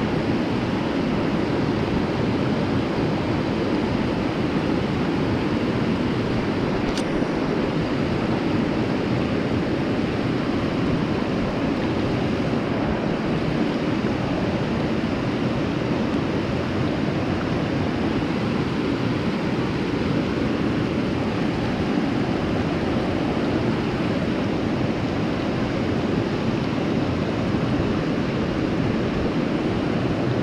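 Steady rush of whitewater pouring over a small spillway into a rocky creek pool, heard close by. A single light click comes about seven seconds in.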